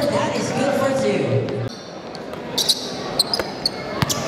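Basketball game on an indoor court: voices and crowd for the first second and a half, then a sudden drop. After that, a few short, sharp sounds of sneakers squeaking and the ball bouncing on the gym floor.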